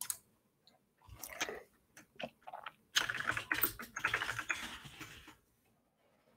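Computer keyboard typing: scattered key clicks in the first half, then a denser run of quick clicks from about three seconds in that stops shortly before the end.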